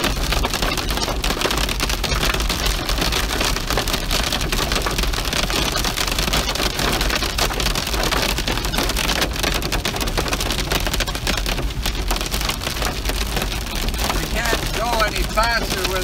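Heavy rain beating on a car's roof and windshield, heard from inside the cabin as a dense, steady patter of hits that is really noisy.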